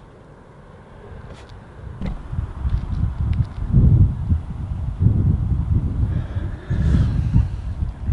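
Wind buffeting the microphone in uneven gusts, a low rumble that starts about two seconds in and swells loudest around the middle and again near the end, with a few faint clicks.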